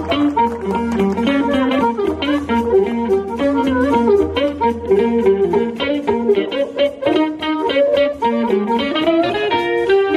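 Live electric blues band playing: amplified blues harmonica carries the lead with bending notes over electric guitar, electric bass and drums with a steady beat.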